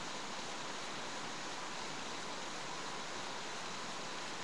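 Steady hiss of a webcam microphone's background noise, with a faint steady tone running through it and no other sound.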